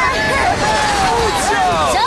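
Several cartoon voices crying out at once without clear words, over a steady rushing noise.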